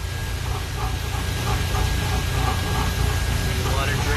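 Water rushing steadily out of an evaporative condenser tower's basin through its opened drain valve: an even hiss over a low rumble. Faint voices sound in the background.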